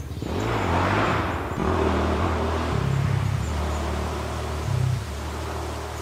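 Motorcycle engine running close by, its pitch stepping up and down several times as it revs.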